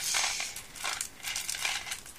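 A small cardboard Jelly Belly box being worked open by hand, its packaging crinkling and rustling in irregular bursts, loudest at the start.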